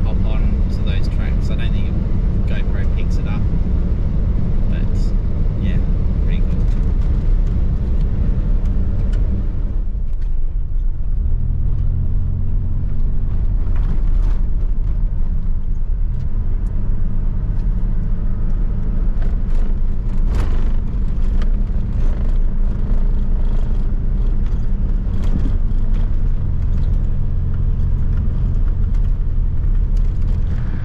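Inside the cab of a four-wheel drive on a rough dirt track: a steady, deep rumble of engine and tyres with frequent rattles and knocks from the uneven surface. About a third of the way in, the higher hiss drops away and the low rumble carries on.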